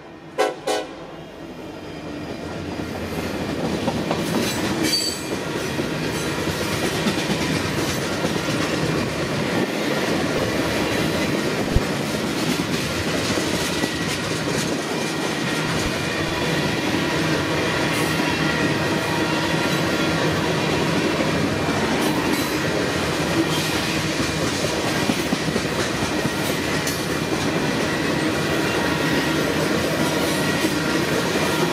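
Freight train rolling past close by, a locomotive horn salute ending in the first second, then the steady rumble and clatter of tank cars and covered hoppers on the rails. The rolling noise builds over the first few seconds and holds, with a single sharp clank about twelve seconds in.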